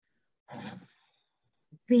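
A woman's short audible breath about half a second in, then a faint mouth click just before her speech resumes at the very end.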